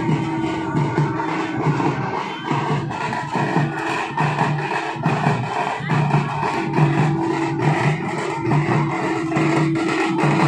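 Festival music: hand drums beaten in a quick, steady rhythm under a held tone, continuous and loud.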